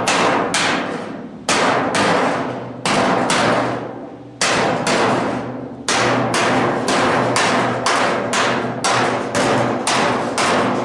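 Hand hammer striking the edge of a steel truck roof skin, each blow ringing and dying away. The blows come irregularly at first, with a gap of more than a second near the middle, then settle into a steady run of about three a second.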